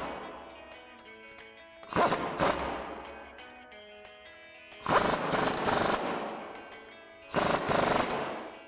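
Impact wrench with a 17 mm socket hammering in short runs as it tightens a coil-over's lower mounting bolts into the lower control arm. There is a brief burst at the start, then three more runs about two and a half seconds apart; the one about five seconds in is the longest, at about a second.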